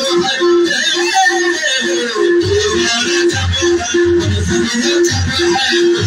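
Live folk music: a long-necked plucked string instrument repeats short notes at one pitch in a steady rhythm. A low beat joins about two and a half seconds in.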